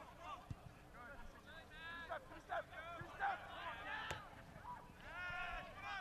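Faint, distant shouts and calls of players and spectators around a soccer field, with a few short knocks, the sharpest about four seconds in.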